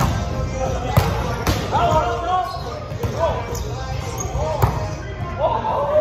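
Volleyball being struck several times during a rally, sharp slaps of hands and forearms on the ball echoing in a large gym, with players' voices calling between the hits.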